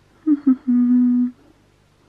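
A woman humming a thinking 'hmm' with her mouth closed: two short notes, then one held, level note of about half a second.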